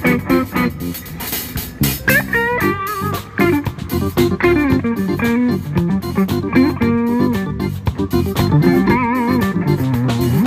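Live funk band (electric guitar, bass guitar, drum kit and keyboard) playing an instrumental groove. About two seconds in, an electric guitar lead enters with a slide up and then plays bent, wavering notes over the bass and drums.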